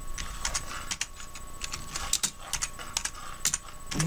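Typing on a computer keyboard: an irregular run of key clicks as a search phrase is typed in.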